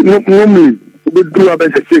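A man's voice talking, with a short pause about halfway through, over a steady electrical hum.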